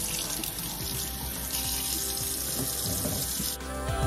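Tap water running into a sink while hair is washed under it, with background music underneath. The running water cuts off near the end, leaving the music.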